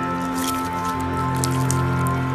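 Background music over wet squishing of slime being kneaded by hand, with scattered small crackling clicks.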